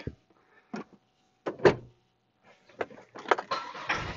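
A few separate clicks and knocks, the loudest about one and a half seconds in, then a brief patch of rustling and handling noise near the end, inside a parked car's cabin.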